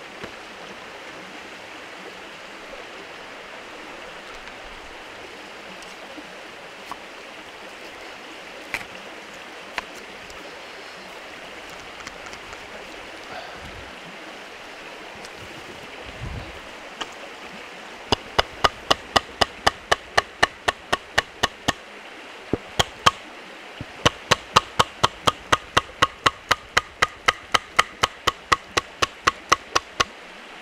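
A wooden baton knocking on the back of a Leatherman multitool blade to split a green grand fir stick: a few scattered knocks, then from a little past halfway a fast run of sharp knocks, about three a second, broken by two short pauses. A steady rushing hiss lies underneath.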